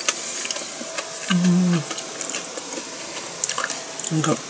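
A person chewing food with close, wet mouth sounds and small clicks. About a second in, a short closed-mouth "mm" hum.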